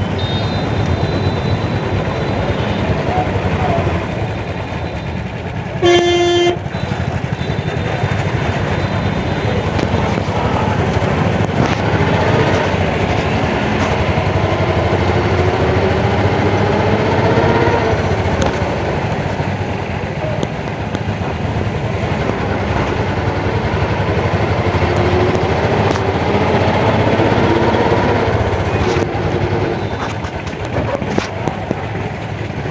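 Busy street traffic with a steady low rumble of engines. One short, loud vehicle horn blast sounds about six seconds in.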